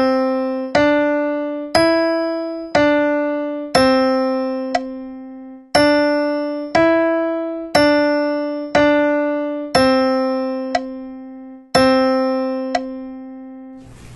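Piano playing a slow stepwise melody in C major, about one note a second, as a solfège and melodic-dictation exercise in 2/4: C, D, E, D, a held C, then D, E, D, D, a held C and a final held C.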